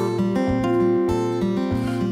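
Acoustic guitar picked in a short instrumental fill between sung lines of a blues song.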